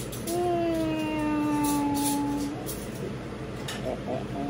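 A drawn-out wordless hum or "ooh" from a person's voice, held for about two seconds and sinking slightly in pitch, with a few faint clinks of a spoon in a ceramic bowl.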